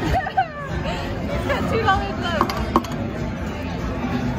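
Video slot machine playing its electronic chimes and jingles as it is played, with a few sharp clicks from its buttons, over the chatter and din of a casino floor.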